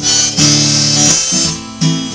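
Harmonica in a neck rack playing chords over a strummed round-backed acoustic guitar. The harmonica stops about halfway through and the guitar strumming carries on alone.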